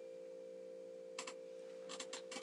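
Quiet pause: a steady low electrical hum, with a couple of faint clicks about a second in and near the end.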